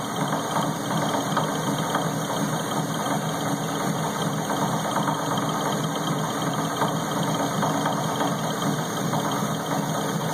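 Metal lathe running steadily, its chuck spinning as a turning tool cuts a brass bushing, with a few faint ticks over the even machine drone.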